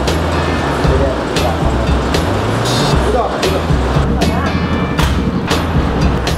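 Background music with a steady beat and a bass line, with voices faintly underneath.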